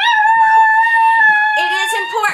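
A dog howling: one long, steady, high-pitched howl.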